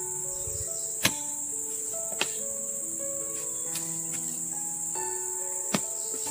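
Steady high-pitched insect chorus of crickets or cicadas under slow background music, with three sharp knocks about one, two and near six seconds in as a bamboo pole is jabbed down into the ground.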